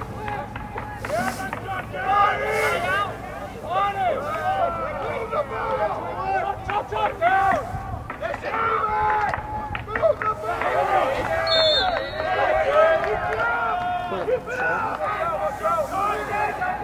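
Many voices shouting and calling over one another at a lacrosse game in play, loud and continuous throughout.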